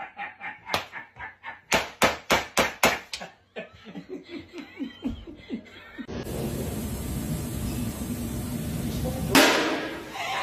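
A quick run of sharp knocks, about five a second, trailing off into softer, duller taps. Then a steady background hum, and near the end one loud bang.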